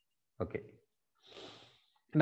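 A man says "okay", then takes a single audible breath through the nose.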